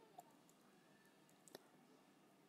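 Near silence with a few faint computer keyboard keystrokes, the clearest click about one and a half seconds in.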